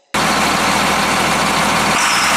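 John Deere tractor's diesel engine running loud and steady, cutting in abruptly just after the start.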